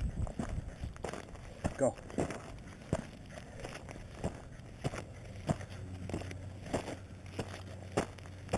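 Footsteps crunching on a loose, rocky gravel trail while walking uphill, roughly two short crunches a second.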